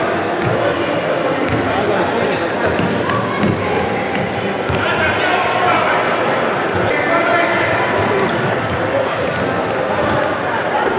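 Futsal ball being kicked and bouncing on a wooden indoor court, with short thuds scattered through a steady hubbub of voices in a large sports hall.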